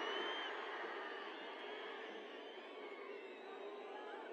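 Faint crowd noise from a large audience, with scattered distant voices, easing off slowly during a pause in the speech.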